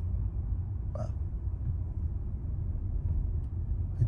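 Steady low rumble of a car driving, heard from inside the cabin, with one brief short sound about a second in.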